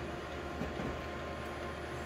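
Office colour photocopier printing a full-colour copy: a steady mechanical hum with whirring tones.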